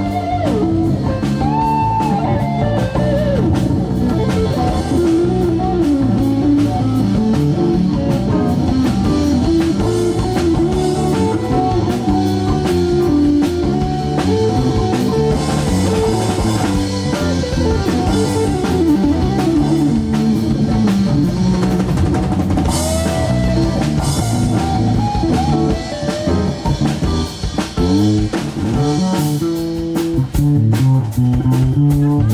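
Live band playing an instrumental break in a bluesy jazz number: an electric guitar lead with bending notes over electric bass and a drum kit.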